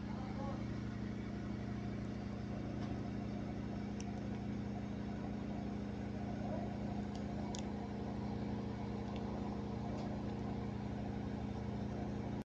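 A steady low mechanical hum with a few faint clicks scattered through it.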